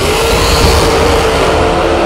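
Two dragsters launching off the line and accelerating at full throttle down the drag strip, their engines running flat out.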